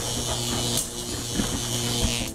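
Sound effect of an animated logo intro: a steady electric buzz with a low hum, high hiss and a few crackles.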